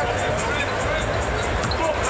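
A basketball being dribbled on a hardwood court, a few sharp bounces, over the steady noise of an arena crowd.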